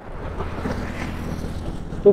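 Wind rushing over the microphone, with the steady low hum of a vehicle engine on an open road.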